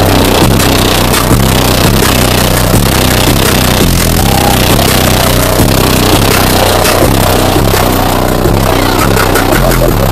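Very loud, bass-heavy music played through the Demobus's high-output competition car-audio system, heard from inside the bus. A steady, heavy low bass runs under it throughout.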